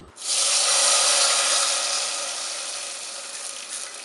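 Curry leaves and green chillies sizzling in hot oil with mustard seeds in a small iron pan for a tempering. The sizzle starts suddenly and loudly, then slowly dies down.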